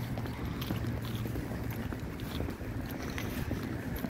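Wind buffeting the microphone in a steady low rumble, with light irregular footsteps on stone paving.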